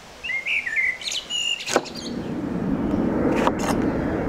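A small bird chirping in quick twisting notes for the first couple of seconds, with a sharp knock just before the middle as a large kitchen knife cuts through an orange onto a wooden table. From about halfway a steady low rumbling noise swells up and holds.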